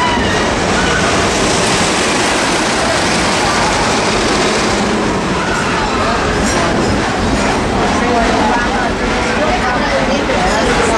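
Steady running noise of a narrow-gauge passenger train rolling along, wheels on the track and rushing air, heard from inside an open-sided passenger car.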